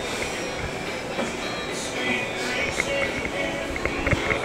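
Background music, faint and steady, under general room noise with a few small clicks and rustles.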